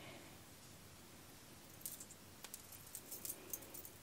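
A few faint, light metallic clicks and jingles in the second half from the Speedweve darning loom's metal hooks as the sock and needle are worked on them.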